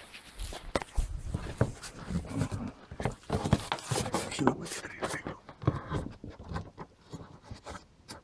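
Aluminium caravan window frame being pried and pulled away from the cladding: irregular scrapes, creaks and small knocks as it works free of the old putty sealant.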